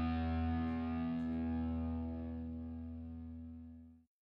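A held distorted electric guitar chord ringing out as a song's final note, fading steadily and then cut off abruptly at the very end.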